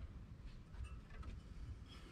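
Faint, scattered small clicks and rustles of hands handling metal parts at the engine's water pump and fan belt.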